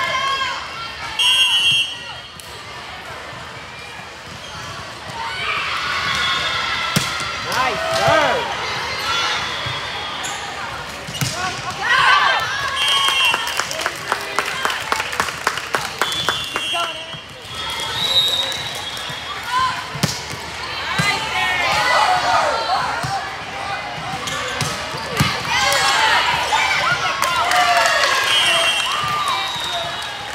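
Indoor volleyball rally: players and spectators calling out and cheering, with short high sneaker squeaks on the court floor and the sharp knocks of the ball being hit and bouncing.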